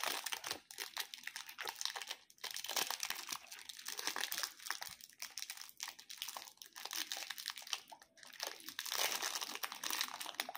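Thin clear plastic candy wrapper crinkling as fingers peel it open. It makes a continuous run of fine crackles with a couple of brief lulls.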